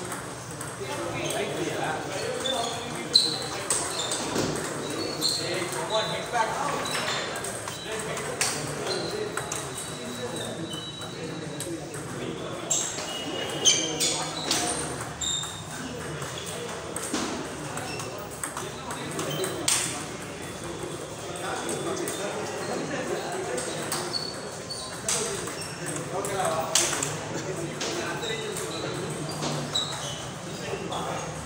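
Table tennis balls clicking sharply and irregularly off bats and STAG tables in rallies, several games going at once, over background chatter in a large hall.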